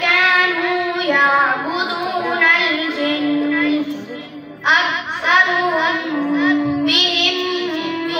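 A boy reciting the Quran in the melodic tajweed style: long held notes with ornamented pitch turns, and a short pause for breath about four and a half seconds in before the next phrase.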